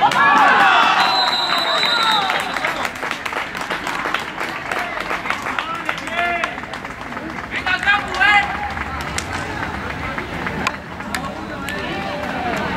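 Players and spectators shouting and cheering over a goal, with scattered clapping; the shouting is loudest at the start and flares again around the middle. A brief, steady, high whistle note sounds about a second in.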